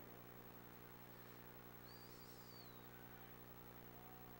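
Near silence: a steady low electrical hum, with one faint, brief bird chirp about two seconds in.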